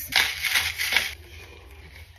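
Hand-twisted spice grinder grinding dried seasoning for about a second, a rough crunching rasp, then only faint handling noise.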